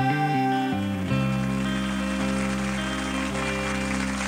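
A rock band's final chord on guitar and backing instruments, struck about a second in and left ringing out at the end of the song, with applause starting to swell near the end.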